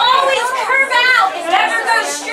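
Speech only: several people talking at once in a crowded room.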